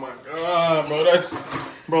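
A person's drawn-out, wordless vocal sounds of disgust that slide up and down in pitch. They are a reaction to the foul taste of a 'dead fish' flavoured Bean Boozled jelly bean.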